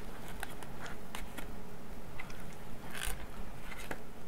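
Plastic food packaging being handled: a Lunchables pizza kit tray and its plastic sauce packet rustle and click in short, sharp crackles, with one louder crinkle about three seconds in.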